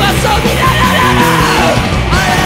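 Punk rock band playing loud, with a male singer yelling the vocal over bass, guitar and drums.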